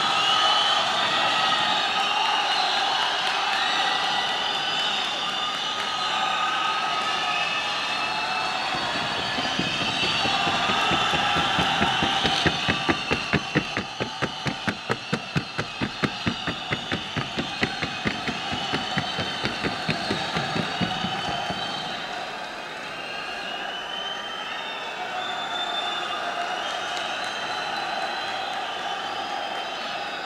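A trotting Colombian paso horse's hoofbeats on the tabla, a wooden sounding board. They come as a fast, evenly spaced clatter for about nine seconds through the middle, over a steady murmur of the arena.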